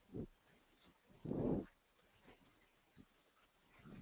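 A near-quiet pause in a talk, broken by one brief faint voice sound about a second and a half in.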